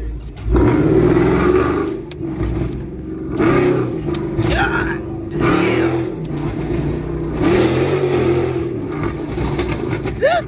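Tuned Dodge R/T V8 accelerating hard, heard from inside the cabin. The engine note climbs and drops back about four times as it pulls through the gears.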